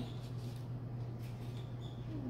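Quiet room tone with a steady low hum. Faint light scratches come from a stencil letter being peeled off a painted wooden board, once just after the start and again near the end.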